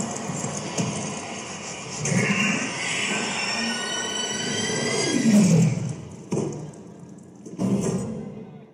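Performance backing track: dense music and noise that slides down in pitch about five seconds in, then falls away, with a short loud burst just before the end.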